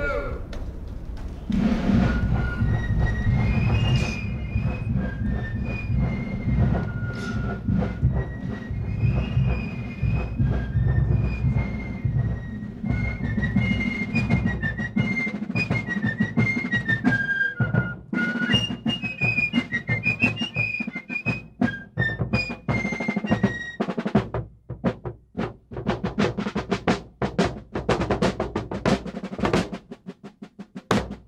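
Ceremonial military music: a high melody line over heavy, steady drumming. In the last few seconds the drumming breaks into sharp, separate snare-like strokes.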